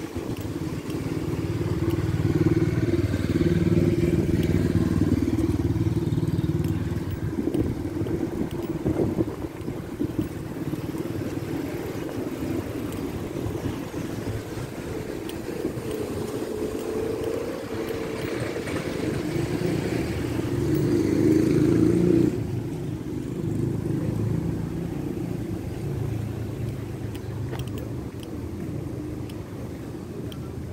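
Street traffic: car engines and tyres passing close by on a city street. It swells in the first few seconds and again later, where it cuts off suddenly.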